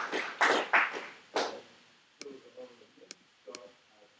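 Audience applause at the end of a talk: separate hand claps that fade out about a second and a half in, followed by a few isolated sharp clicks and faint murmured voices.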